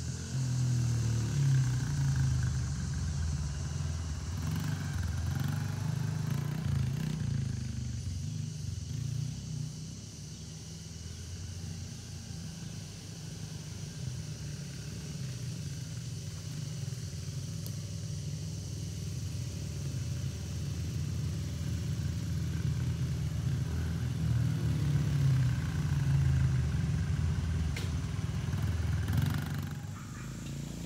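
A small dirt bike engine runs continuously as it is ridden around. It is loud over the first several seconds, drops to a more distant drone in the middle, and comes close and loud again near the end.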